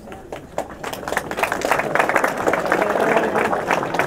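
Small crowd applauding, starting thin and swelling to steady clapping about a second in.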